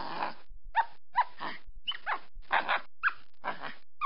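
An animal's short yelping calls, about two a second, each falling in pitch, played as an added sound effect over a steady hiss.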